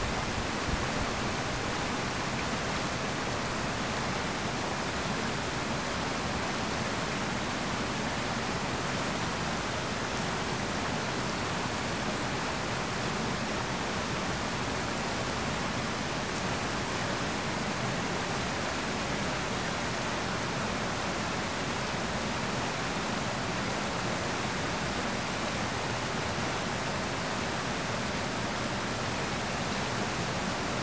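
Steady rushing of river white water, an even hiss-like noise that does not change.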